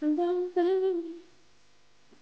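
A woman humming two short notes, the second a little higher with a slight waver, fading out after about a second.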